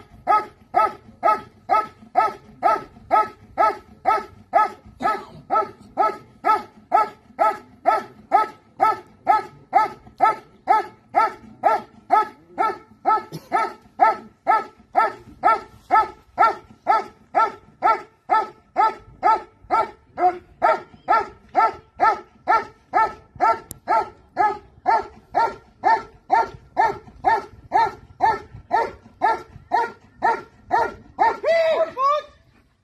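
German Shepherd barking at a protection helper in a hiding blind, in a steady, unbroken rhythm of about two barks a second. This is the sustained hold-and-bark of protection-sport trial work.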